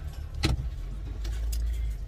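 Car engine idling, heard as a steady low rumble inside the cabin, with a single sharp click about half a second in.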